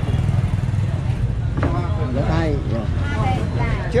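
Busy street-market ambience: a steady low motor rumble runs throughout, with people's voices talking about a second and a half in and again near the end.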